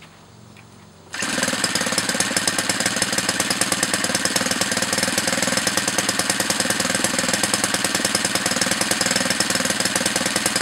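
O.S. GF40 40cc single-cylinder four-stroke gasoline model-aircraft engine, turning an 18x8 propeller on a thrust-test stand. It comes in abruptly about a second in and then runs steadily with an even, rapid firing beat, warming up before the computer-controlled throttle test.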